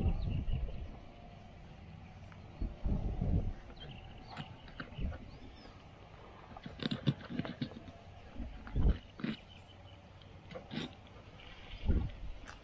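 Knife scraping scales off a fish held on a plastic board: irregular short scrapes and clicks, with a few dull thumps from handling the fish and board.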